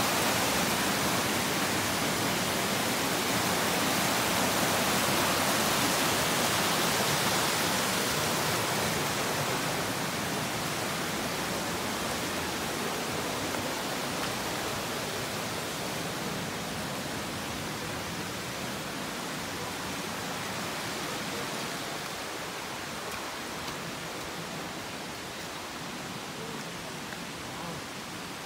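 Rushing water of a rocky stream running over rapids: a steady rush that fades gradually through the stretch.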